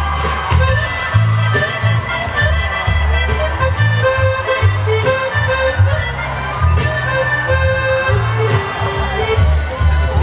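Live band playing an instrumental passage led by accordion, with sustained melody notes over upright bass and drums.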